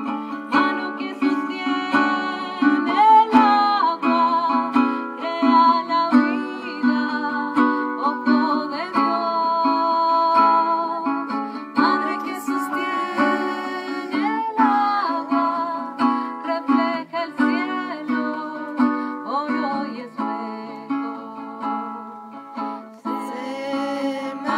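A song performed live: singing over a small acoustic guitar-like stringed instrument strummed in accompaniment.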